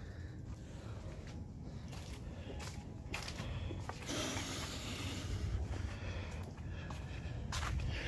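Footsteps and handling rustle on a handheld phone's microphone, with scattered light clicks over a steady low background rumble.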